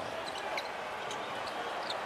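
Basketball being dribbled on a hardwood court during a fast break, with a few short, high sneaker squeaks over a steady low arena background.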